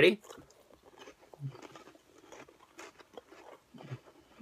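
Goldfish crackers being chewed: a run of small, irregular crunches, fairly quiet, with a short low hum about a third of the way in and again near the end.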